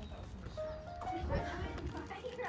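Indistinct voices of people talking nearby, with light footsteps on bare rock.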